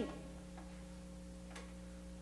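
A pause in the talk filled by faint room tone with a steady low hum, and one faint tick about a second and a half in.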